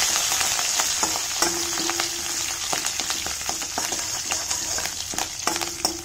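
Curry leaves, dried red chillies and seeds sizzling in hot oil in a steel kadai as a tempering, with a steel ladle scraping and clicking against the pan as it stirs.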